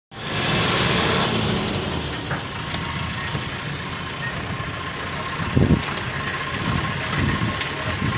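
A vehicle being driven along a mountain road. Its engine runs steadily under road and wind noise, heard from aboard the moving vehicle, with a couple of short low bumps in the second half.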